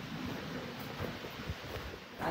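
Steady low hiss of background noise.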